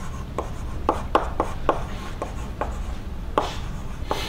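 Chalk writing on a blackboard: about ten irregular sharp taps and short scratches as words are written.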